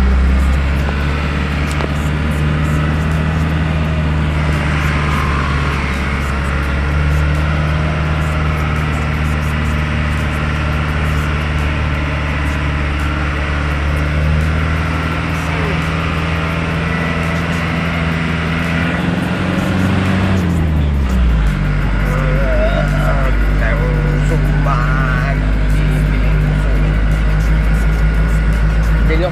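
Vehicle engine running steadily while driving, heard from inside the cab. About twenty seconds in, the engine note falls, then holds steady at the lower pitch.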